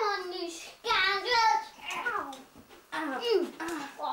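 Children's high-pitched voices, talking or calling out, words not made out.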